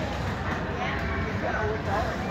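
Indistinct voices of people talking in the background over steady crowd noise, with no clear machine sound standing out.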